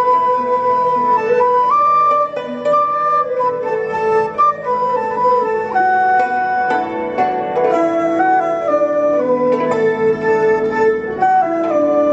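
Chinese traditional orchestra playing a slow melody: a dizi flute and bowed erhu carry the tune in held, stepping notes over plucked pipa and ruan and a struck yangqin.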